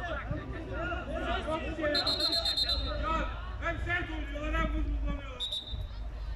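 Several men's voices calling and shouting across a football pitch, with a referee's whistle blown for about a second about two seconds in and a short blast near the end.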